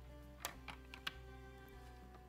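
A few light plastic clicks as the clear acrylic lid of a stamp-positioning platform is closed onto the card, with quiet background music.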